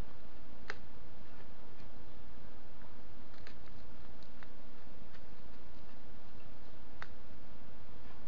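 Potting soil being scooped into a small plastic pot with a plastic scoop: a few scattered light ticks as the scoop and soil hit the pot, over a steady hiss.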